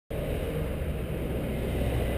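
Honda CBR1000RR (SC59) inline-four engine with an Arrow Racing exhaust, idling steadily.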